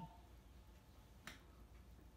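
Near silence: quiet room tone, with one sharp click a little past halfway through.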